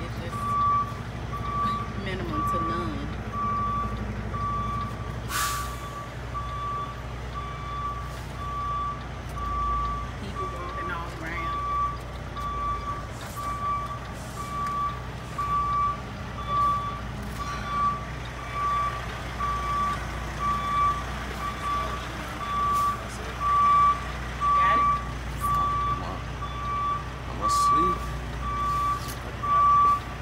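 Semi truck's reversing alarm beeping at an even pace over the low running of its diesel engine as it backs up, with a sharp click about five seconds in.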